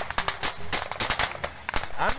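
Rapid, irregular cracks of small-arms gunfire during a firefight, several shots a second.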